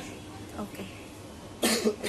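A person gives a single short cough near the end.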